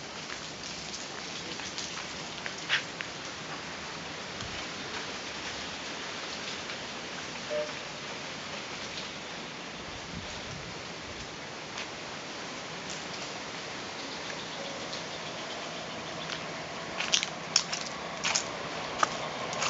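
Steady outdoor hiss, strongest in the upper range, with scattered sharp clicks and a quick run of louder clicks near the end.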